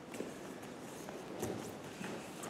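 Soft footfalls and body movement on judo mats as a barefoot student gets up and steps away, with two dull thuds, one just after the start and one about a second and a half in.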